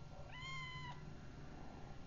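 A kitten meowing once: a single high-pitched call of under a second that rises at the start and then holds steady.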